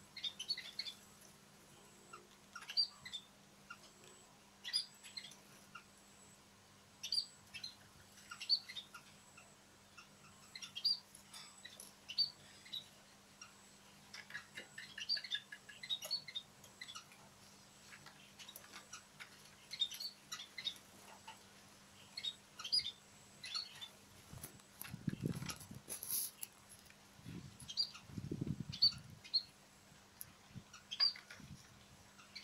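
Small munias (emprit) giving short, high, thin chirps, scattered singly and in quick little runs throughout. Near the end there are two brief low rumbles.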